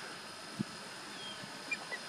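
Faint open-air background hiss with a single soft knock about a third of the way in, and a few faint, short, high bird chirps near the end.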